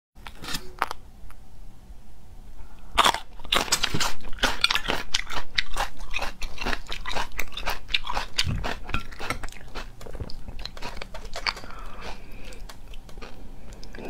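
Close-miked crunching and chewing of a raw green chili pepper: a few crisp crunches at first, then rapid, loud crackling bites and chews from about three seconds in.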